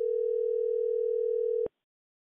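A single steady telephone ringing tone, about two seconds long, heard by the caller as the call is transferred. It cuts off suddenly near the end.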